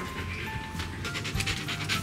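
Siberian husky panting in quick, even breaths, under background music of long held notes that step down in pitch.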